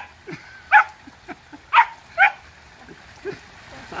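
Australian Labradoodle puppy giving three short, high yips: she wants to get into the pool but is hesitant.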